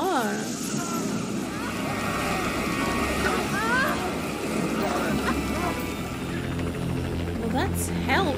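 Television drama soundtrack: tense music and sound effects over a low rumble, with many short high sliding sounds and a voice briefly at the start.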